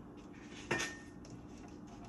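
A stiff picture-book page being turned by hand, with one sharp clack about two-thirds of a second in as it comes down flat, over soft paper handling.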